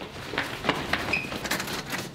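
Irregular knocks and clicks of hurried footsteps on a hard floor, ending with a hand working a metal door handle.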